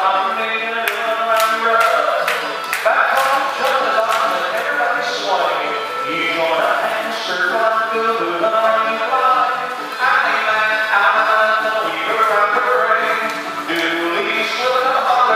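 Square dance singing call: upbeat recorded dance music with a caller singing the call over it and a steady beat.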